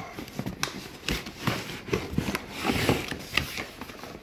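Cardboard box and packaging being handled and opened by hand: irregular scrapes, rustles and light knocks of cardboard.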